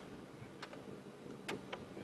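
Quiet background with about four faint, sharp ticks spread across two seconds.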